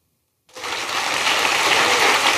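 A large audience applauding, the clapping starting suddenly about half a second in and swelling to a steady level.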